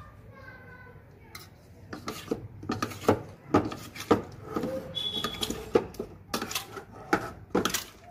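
Metal spoon clinking and scraping against a stainless steel plate while paneer cubes are tossed in dry powder: many quick, irregular knocks starting about two seconds in.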